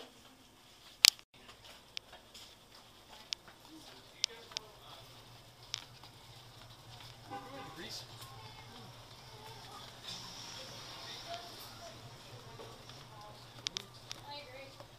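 Walking footsteps and scattered sharp taps on a paved alley, the loudest tap about a second in, with faint voices in the background. A low steady hum comes in about halfway.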